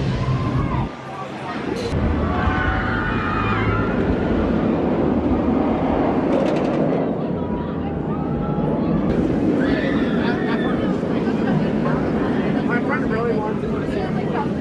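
Bolliger & Mabillard floorless steel roller coaster train (Rougarou) running steadily through its loop and track, with people's voices over it.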